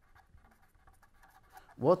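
Pen writing on paper: faint scratching strokes as a word is written by hand, with a man's voice starting a word near the end.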